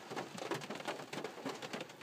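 Heavy rain hitting a car, heard from inside the cabin: a dense, uneven run of small ticks.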